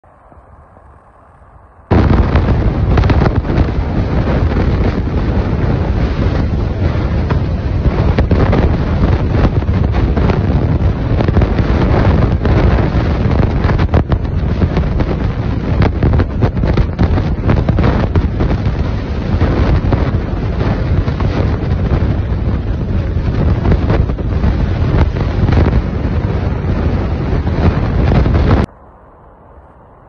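Water from the open dam shutters rushing down the concrete spillway close by: a loud, steady, deep roar. It starts abruptly about two seconds in and cuts off shortly before the end.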